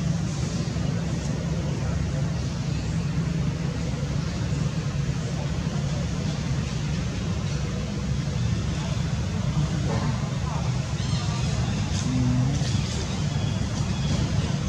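A steady low rumble like a running engine, with faint human voices over it.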